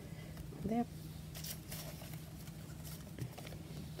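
Faint, brief rustles of paper snippets and a lace doily being handled by hand, over a steady low hum.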